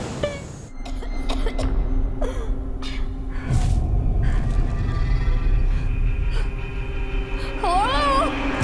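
Film trailer soundtrack: tense music over a deep, steady low rumble, broken by several short sharp hits in the first few seconds, with a wavering pitched sound near the end.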